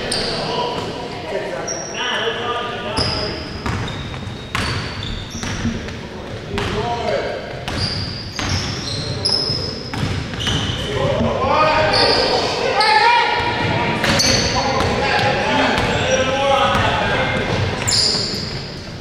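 Basketball play on a hardwood gym court: the ball bouncing, sneakers squeaking in short high chirps again and again, and players calling out to each other, loudest from just past the middle until near the end. It all echoes in a large hall.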